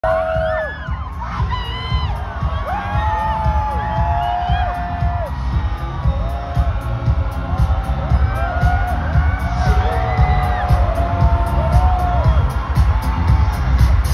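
Stadium concert crowd screaming and whooping over bass-heavy music from the PA, loud and close throughout.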